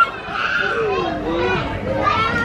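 Young children's voices during play, with one child's drawn-out call that dips and then rises in pitch.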